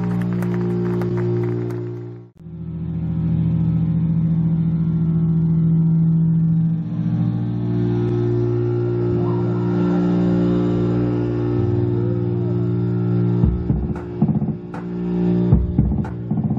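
Live electric bass guitars and electronics holding a low, sustained drone, which drops out for a moment about two seconds in and then returns. Near the end, picked bass guitar notes come in over it.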